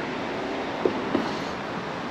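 Steady rushing outdoor background noise, with two faint short tones a little under and just over a second in.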